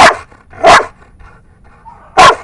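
A Belgian Malinois barks twice, about two-thirds of a second apart. These are short, sharp barks given on the handler's 'alert' command.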